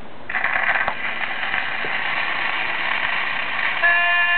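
Shellac 78 rpm record playing a 1942 country recording: steady surface hiss, then about a third of a second in the band's rough, scratchy-sounding intro comes in. Near the end a harmonica melody starts.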